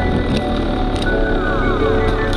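Dirt bike engine running at a steady low speed under background music, with a few falling notes in the second half.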